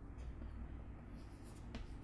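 Chalk writing on a chalkboard: a few faint, short scratching strokes in the second half, over a low steady hum.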